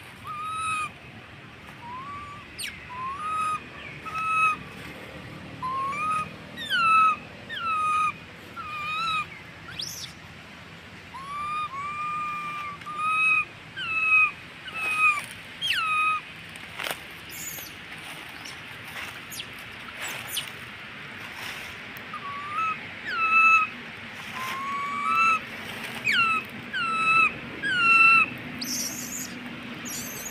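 Infant macaque giving repeated short, high coo calls, each rising or dipping in pitch, about one a second, breaking off for several seconds in the middle and then resuming. These are the distress and contact calls of an infant wanting its mother.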